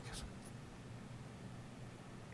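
Quiet room tone: a faint steady hiss with one small tick about half a second in.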